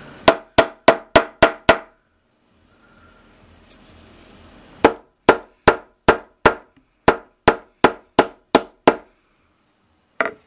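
Hard, sharp blows smashing a plastic calculator. A quick run of six comes first, then after a pause a steadier run of about eleven.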